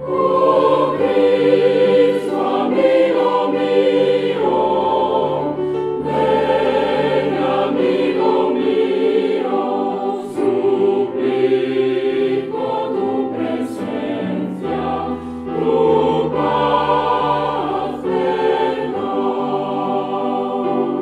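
A mixed choir of women's and men's voices singing a sacred piece, the sound continuous with held notes that change every second or so.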